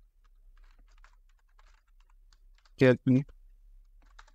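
Faint typing on a computer keyboard: scattered, irregular key clicks.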